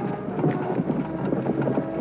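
Carriage horses' hooves clip-clopping, a run of irregular knocks.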